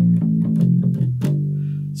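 Electric bass guitar playing a short riff of plucked notes, then stopping on a held G that rings out and slowly fades from about a second and a quarter in.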